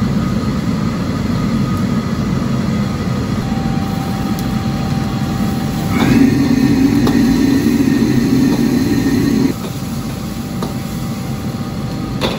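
Commercial gas wok burner running with a steady, low rush of flame under the wok, with light scrapes and taps of the ladle as greens are stir-fried. About halfway through the rush gets louder for some three seconds, then drops back suddenly.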